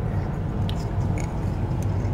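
A few faint clicks of a screwdriver working the centre screw of a toilet spring cartridge, a #10 stainless screw that threads into a plastic valve shaft. A steady low hum runs underneath.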